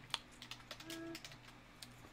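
Faint computer keyboard typing: a handful of irregular key clicks as text is typed. A short spoken 'um' is heard partway through.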